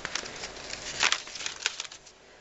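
Paper rustling and crinkling as a page of a ring-binder herbarium is turned, with a louder rustle about a second in.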